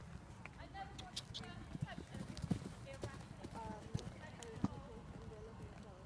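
New Forest pony's hooves striking the sand arena as it canters and jumps, a run of dull hoofbeats at an uneven rhythm, with indistinct voices in the background.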